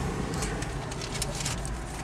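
Car engine running, heard from inside the cabin as a steady low rumble, with a few faint clicks.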